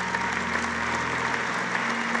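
Congregation applauding steadily, a dense even clapping.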